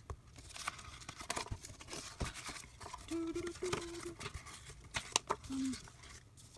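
Paper sticker sheets being handled and shuffled, with scattered rustles and small clicks, the sharpest about five seconds in. A person hums a short steady note with closed lips for about a second in the middle, and briefly again near the end.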